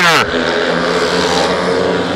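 Speedway bike's single-cylinder engine running flat out at a steady, unbroken pitch as the rider slides the bike around the dirt track.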